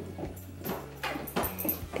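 A dog's claws clicking and tapping on a hardwood floor, a handful of irregular taps.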